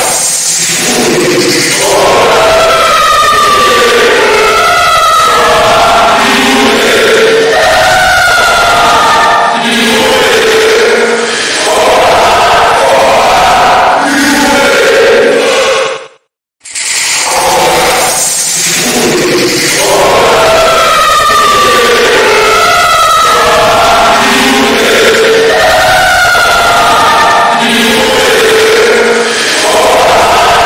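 A short voice clip played over itself hundreds of thousands of times at once, forming one loud, dense, distorted wall of overlapping voices. It cuts out briefly about 16 seconds in, then starts again stacked about a million times over.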